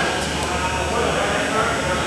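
Indistinct voices murmuring and echoing in a large gymnasium hall, over a steady low hum.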